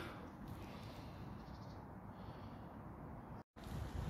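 Faint outdoor ambience: a low, even hiss and rumble with no distinct event, broken by a short gap of total silence about three and a half seconds in.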